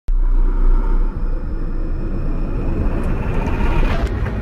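Intro sound effect for a logo reveal: a deep, steady rumble with faint higher tones, building up toward the end into a hit.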